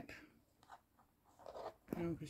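Faint scraping of fingers on a plastic plate while picking up food, with a couple of small clicks.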